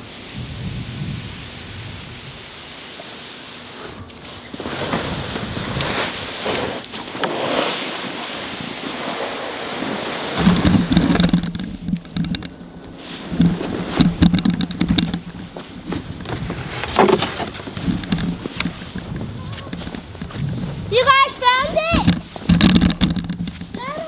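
Plastic sled sliding and scraping down snow, with wind buffeting the microphone. A steady low hum sets in about halfway, and a child's voice comes in near the end.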